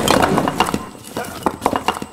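Crash of a ruined brick wall breaking, followed by bricks and debris clattering down in a run of sharp knocks that fades out.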